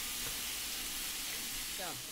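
Lamb loin chops sizzling steadily in hot olive oil as they sear in the pan. A brief voice sound comes near the end.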